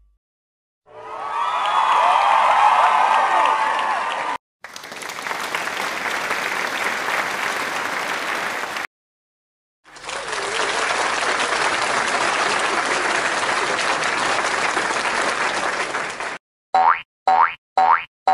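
Stock sound effects: a crowd cheering and applauding in three stretches broken by brief silences, the first with whoops and whistles. Near the end, a run of cartoon boing sounds, about two a second.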